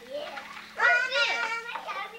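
A young child's high voice, a pitch-swooping exclamation starting about halfway through.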